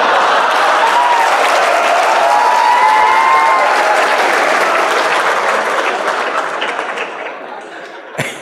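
A large audience applauding and laughing together, with a few voices in the crowd; the applause dies away over the last two seconds.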